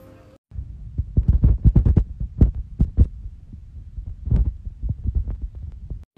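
Loud, irregular low thumps over a rumbling undertone, starting about half a second in, with the thickest run of thumps in the first two seconds and another strong one past the four-second mark.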